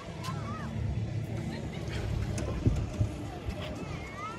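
A steady low engine hum under distant crowd chatter, with a brief knock near the middle.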